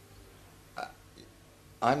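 Quiet room tone in a pause in talk, broken about a second in by one brief mouth sound from a person, then a man starts speaking right at the end.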